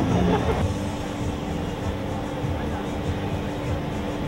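Low rumbling background noise with a single steady hum that sets in about half a second in, after a brief voice at the very start.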